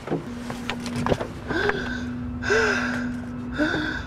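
A person's short gasping breaths, three in all, about a second apart, over a steady low held tone.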